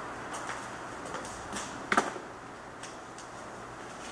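Objects handled at a table: light rustles and small clicks over steady room hiss, with one sharp knock about two seconds in, the loudest sound.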